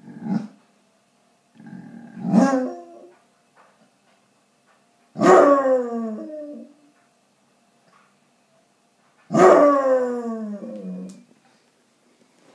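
Basset hound howling: a short yelp and a brief bark-howl, then two long howls that each start high and slide down in pitch. The dog is howling because its owner has gone out.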